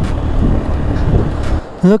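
Hero XPulse 200 single-cylinder motorcycle running on the move, with wind noise on the microphone as a steady low haze that eases shortly before a voice starts near the end.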